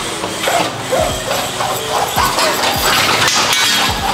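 Cord-operated roller blind ratcheting as its cord is pulled hand over hand to raise the shade, a rapid rattling clicking of the clutch mechanism. A low beat of background music runs underneath.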